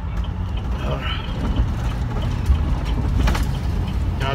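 School bus running down the road, its engine and road rumble heard from the driver's seat. There is a short knock or rattle a little past three seconds in.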